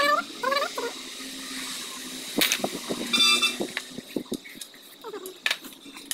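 Hand tools clicking and clinking on the Royal Enfield engine's primary-side metal parts, with a short metallic ring a little after three seconds. A short, high call that rises and falls in pitch sounds twice in the first second and again near the end.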